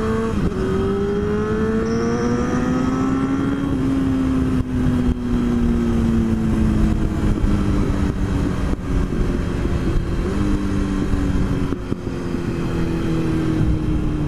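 Honda CBR954RR's inline-four engine under way. It rises in pitch through an upshift about half a second in, then falls slowly as the bike slows, with a couple more gear changes near the end. Steady wind rush runs over it.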